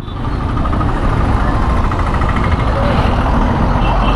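Honda CBR 250R's single-cylinder engine running as the motorcycle rides slowly through dense city traffic, mixed with the steady noise of the vehicles around it.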